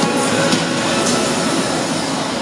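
Steady echoing din of an indoor swimming pool, with music playing in the background.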